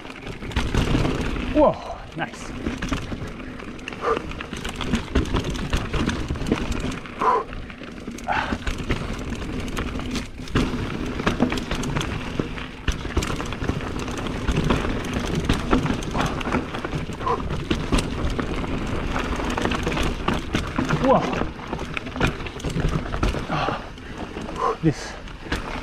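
Mountain bike rolling fast down a loose dirt trail: a continuous rumble of tyres on dirt and gravel, full of small clicks and knocks from the bike rattling over the ground. The rider breathes hard and grunts briefly a few times.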